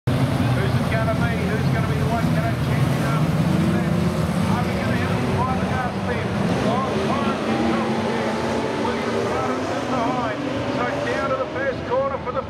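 A pack of V8 saloon race cars at full throttle on a dirt speedway oval, many engines running together as a loud, steady, dense roar at the start of a race.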